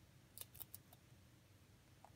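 Pet rabbit gnawing a pinecone: a quick run of four or five small, crisp crunches about half a second in, otherwise faint.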